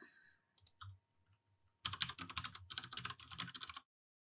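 Typing on a computer keyboard: two or three isolated key clicks, then a quick run of keystrokes lasting about two seconds as a short terminal command is typed.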